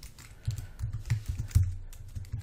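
Typing on a computer keyboard: a run of separate, irregular key clicks, several in two seconds.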